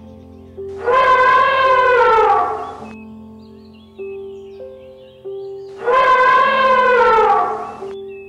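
Elephant trumpeting twice, two near-identical calls about two seconds each whose pitch sags near the end, over background music of held keyboard notes.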